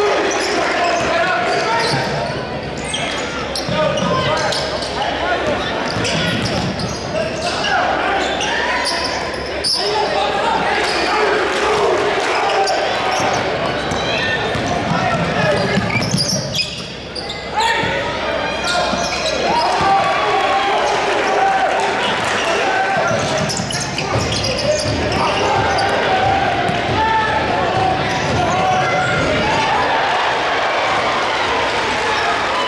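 Basketball game sound in a large, echoing gymnasium: a ball bouncing on the hardwood court among indistinct voices of players and spectators.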